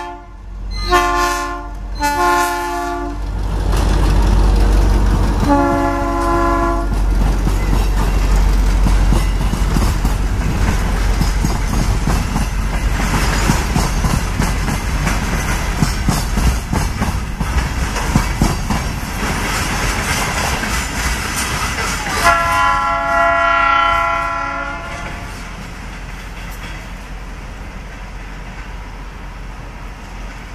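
TEM-15 diesel locomotive sounding its multi-tone horn in two short blasts near the start, another about six seconds in, and a longer one about 22 seconds in. Between the blasts its diesel engine runs under power and the passenger coaches roll past with wheel clatter on the rail joints. After the last blast the train's sound falls away as it moves off.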